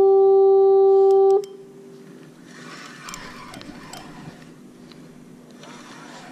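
One long, loud horn blast at a single steady pitch, cutting off abruptly about a second and a half in with a brief echo. Faint noise follows.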